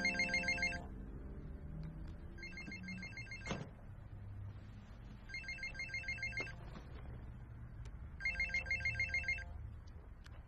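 Mobile phone ringing with an electronic trilling ringtone: bursts of rapid high beeps, each about a second long, repeating roughly every three seconds.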